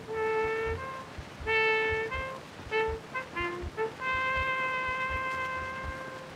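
Instrumental interlude on a 1923 Edison Diamond Disc acoustic recording. A single wind instrument plays a short phrase of held and quick notes, ending on a long held note about four seconds in. Record surface noise crackles and thumps underneath.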